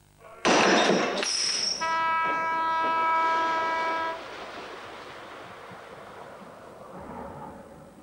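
A lifeboat launching down a slipway: a loud rush of splashing water as the hull enters the sea, then a horn blast held for about two seconds, then quieter steady noise.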